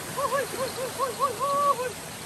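A man's rhythmic, warbling hoot, 'uh-uh-uh', its pitch bobbing up and down about five or six times a second in one unbroken run, over the rush of a small stream.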